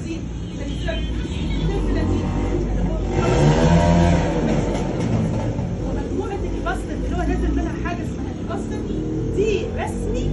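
Indistinct, muffled voices over a steady low rumble, with a hum that rises and falls about three to four seconds in.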